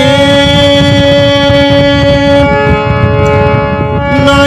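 A damaged harmonium holding a steady chord of reed notes. About two-thirds of the way through, the chord changes as one low note drops out and a higher note comes in.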